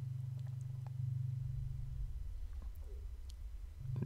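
A low, steady electronic drone from the Ableton effects rack's output. It drops lower a little past halfway and comes back up just before the end, with a few faint mouse clicks over it.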